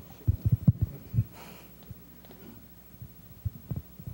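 Soft low thumps from microphone handling, several in quick succession in the first second and a couple more near the end, over quiet room tone.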